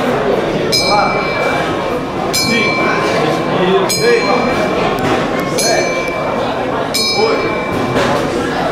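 A small metal bell struck five times, about once every second and a half, each strike a short, bright ring that dies away quickly, over a steady background of voices in a large echoing hall.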